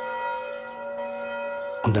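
Church bells ringing, heard as a steady chord of several tones that breaks off near the end.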